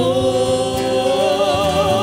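A woman singing fado, holding one long note that begins to waver with vibrato about a second in.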